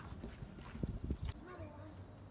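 Footsteps: a few dull thuds close together about a second in, with faint voices.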